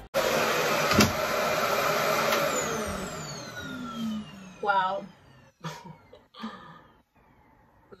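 RevAir reverse-air hair dryer running with a steady rush of air, a click about a second in, then its motor winding down with a falling pitch and fading out over the next two seconds or so.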